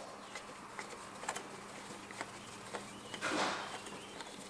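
Faint clicks of a screwdriver turning out the old retaining screw of the air-line fitting on a Mercedes W211 Airmatic rear air spring, with a short scraping rustle about three seconds in.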